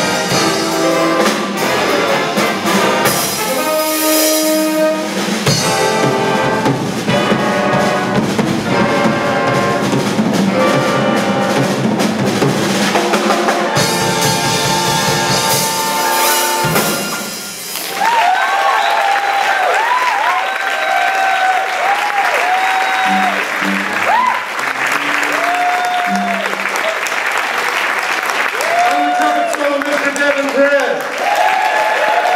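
Big band of trumpets, trombones, saxophones and rhythm section playing the last bars of a jazz chart, ending on a loud final chord that cuts off sharply a little past halfway. Audience applause and cheering follow.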